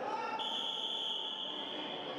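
A referee's whistle blown in one long, steady, high-pitched blast that starts about half a second in, signalling points during a wrestling bout.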